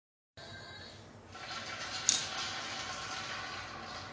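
A phone being handled as it is set up: one sharp click about two seconds in, over a steady background hiss.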